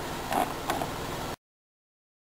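Steady low rumble of a car's cabin, with two brief faint sounds under a second in; the sound then cuts off abruptly to silence.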